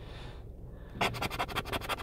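A plastic key-tag card scraping the coating off a scratch-off lottery ticket in rapid back-and-forth strokes, starting about a second in.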